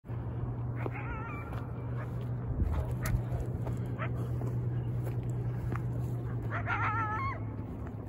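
Coyote calls: two short, wavering, high-pitched cries, one about a second in and another near the end, each under a second long.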